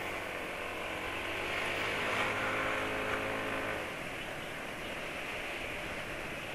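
Yamaha scooter's engine running while riding in traffic, over steady wind and road noise. The engine hum grows a little louder in the middle and fades out about four seconds in.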